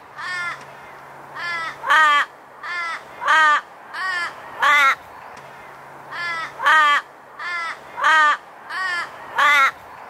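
Australian raven calling: a run of about a dozen harsh caws, each falling in pitch, some louder than others, with a short pause about five seconds in.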